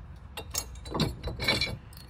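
Steel hitch pin being worked and drawn out of the holes of an adjustable drop hitch shank: a few short metallic clicks and scrapes, the strongest about a second and a half in.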